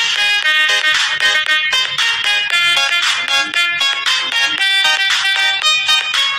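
Music: a bright, quick melody of short notes following one another without a break, ringtone-like.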